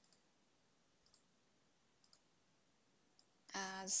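Faint computer mouse clicks over near silence, about a second and two seconds in, then speech begins near the end.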